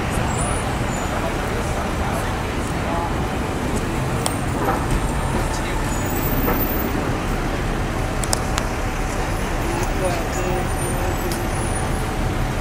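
Busy city street ambience: a steady rumble of traffic mixed with the voices of passing pedestrians.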